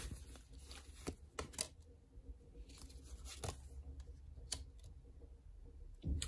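A deck of tarot cards being shuffled and handled by hand: quiet, scattered soft snaps and rustles of the card edges over a faint low hum.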